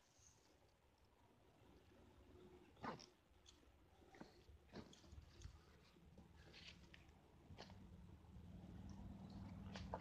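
Near silence, broken by a few faint clicks and rustles of nylon backpack straps and buckles being tugged and adjusted; a low steady hum grows in over the second half.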